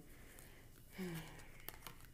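Quiet room tone, with a short murmured hum of voice about a second in and a couple of faint ticks of tarot cards being handled near the end.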